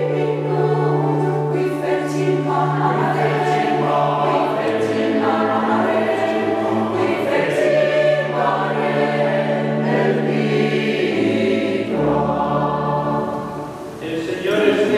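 Mixed choir of men and women singing in long held chords, with the sound dropping away near the end.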